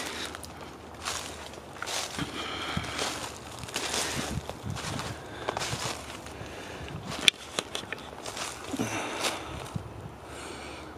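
Footsteps shuffling and crunching through dry leaf litter on a forest floor, about one step a second. About two-thirds of the way through there is a single sharp click.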